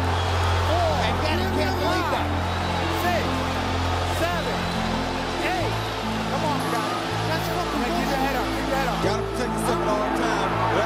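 Background music with long held low bass notes that shift every few seconds, and a gliding melodic line above them.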